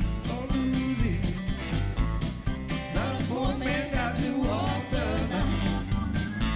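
Live band playing a song: electric guitar, bass and drums keep a steady beat while a man sings lead.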